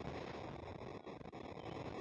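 Faint steady background noise with no distinct event, only a few light ticks.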